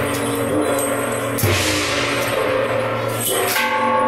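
Temple procession percussion: drum, gong and cymbals playing continuously, with two sharp crashes, about a second and a half in and near the end, the second leaving a ringing tone.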